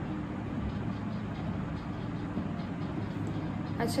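Steady low background hum and hiss with no distinct events, and a brief spoken word at the very end.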